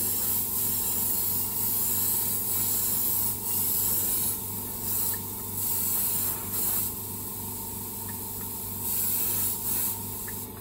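Airbrush spraying a thin pearl dust coat in several bursts of air hiss, the first about three seconds long and the rest shorter, over a steady low hum.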